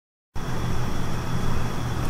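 A steady low mechanical hum with a thin, steady high tone above it, starting abruptly after a moment of silence.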